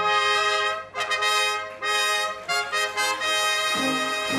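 Brass band playing a short festive fanfare, led by trumpets: it starts suddenly and runs as a string of short, bright phrases with brief breaks between them.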